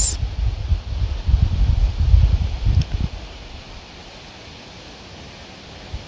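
Wind buffeting a phone microphone outdoors, a gusty low rumble. It dies down about three seconds in to a quieter steady hiss.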